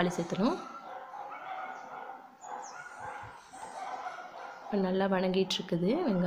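A dog making long, drawn-out calls whose pitch holds and then slides up and down: one call trails off at the start and another begins near the end.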